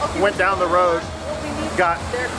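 A man talking, over a steady low background rumble.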